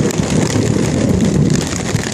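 Heavy rain pouring down and drumming on a tarp shelter overhead, a loud steady hiss.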